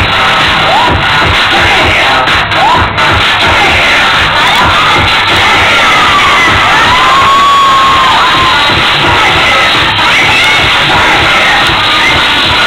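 Audience cheering and shouting over loud dance music with a steady bass beat, with one long held cry about two-thirds of the way through.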